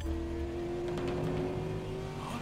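Car engine running steadily, heard from inside the car, with a held hum that sinks very slightly in pitch.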